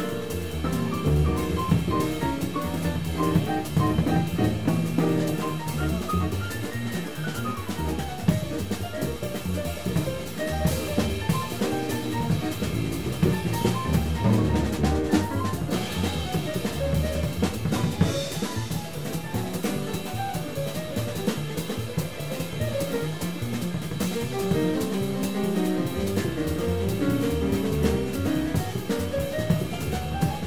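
Live acoustic jazz quartet playing: grand piano soloing with quick runs of notes up and down the keyboard, over drum kit and double bass.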